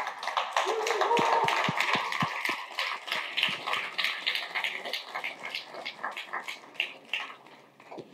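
Audience applauding, a dense patter of clapping with a few voices mixed in, dying away near the end.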